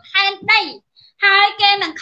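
A high-pitched voice in short phrases of fairly level pitch, with a brief pause about a second in.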